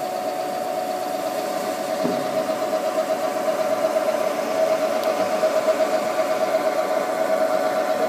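Haas CNC vertical mill running, its spindle turning at 1,000 RPM while the axes feed the end mill slowly at 12 inches per minute, with a steady whine.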